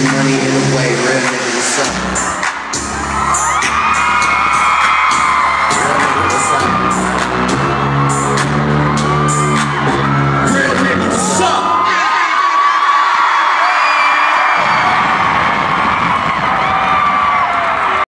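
Bass-heavy hip-hop beat through a club sound system, with a crowd screaming and whooping over it. About twelve seconds in the bass cuts out, leaving the crowd cheering and screaming.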